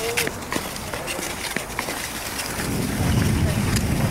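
Nordic skate blades scraping and gliding over canal ice, with scattered short scratches. From about halfway, a low wind rumble on the microphone grows louder.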